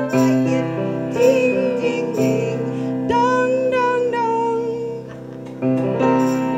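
A woman singing a song with instrumental accompaniment that holds steady chords; her voice holds long notes about a second in and again from about three seconds, and the music drops briefly shortly before the end.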